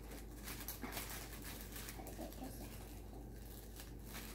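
Faint crinkling of a thin plastic bag as a hand picks cucumber slices out of it, with a few light clicks.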